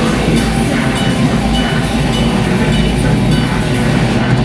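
Live death metal band playing loudly: distorted, low-tuned guitars and bass over fast drumming with rapid cymbal strokes.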